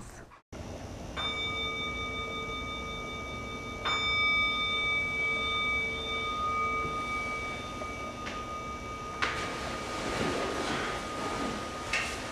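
Meditation bowl bell (singing bowl) struck twice, about a second in and again near four seconds. Each strike rings on in a long, slowly fading tone of several clear pitches. A soft rustling noise rises under the ringing near the end.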